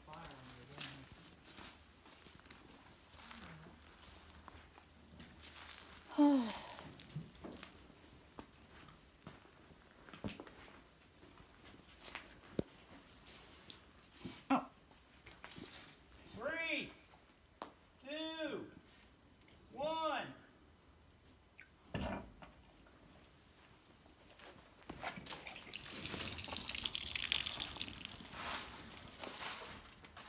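Water rushing and spraying out of a PVC watering pipe for a few seconds near the end, as the line is first filled from the tank. Earlier, a voice gives three short calls that rise and fall in pitch, with a click a little later.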